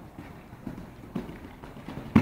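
A horse's hooves cantering on a soft sand arena surface, a beat about every half second.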